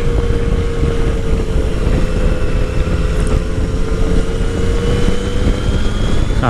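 Yamaha FJ-09's inline-three engine running at a steady cruise, its pitch holding nearly even and easing off slightly near the end, under heavy wind rush on the microphone.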